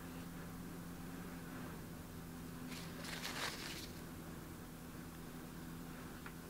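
Faint steady low hum, with a brief rustling scrape about three seconds in as the ice cube is pushed down and held in thickened epoxy resin in a plastic cup.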